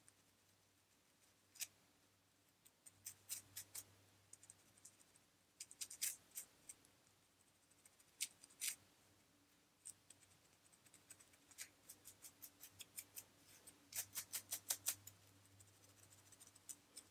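Dry, flaky scalp being scratched through thick curly hair: short, crisp scratching strokes in scattered groups, with a quick run of strokes near the end. A faint low hum runs underneath.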